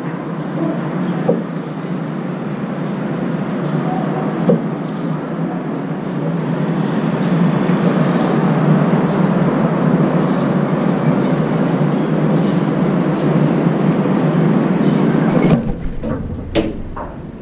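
Steady rumbling urban background noise, with a few faint light taps as a Eurasian tree sparrow pecks rice from a steel bowl. Near the end an oriental turtle dove's wings flap as it swoops in to land on the balcony railing.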